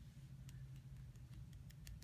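A few very faint light ticks as a clear acrylic stamp block is pressed onto watercolour paper on a tabletop, over a low steady hum.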